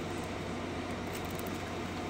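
Steady low hum and hiss of room background noise, with no distinct event standing out.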